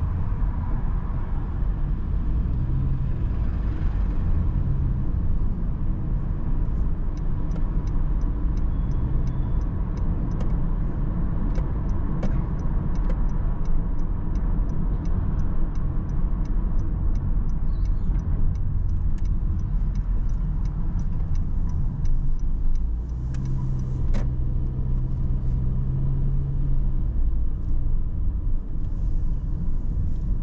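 Inside-the-cabin road noise of a car driving through city traffic: a steady low rumble of engine and tyres. A quick, even ticking runs for several seconds in the first half, and a steadier low hum comes in for a few seconds near the end.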